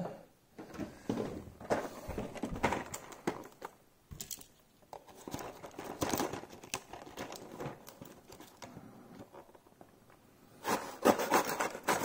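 Blister-card toy packaging being handled and torn open: irregular crinkling, rustling and small clicks, louder near the end.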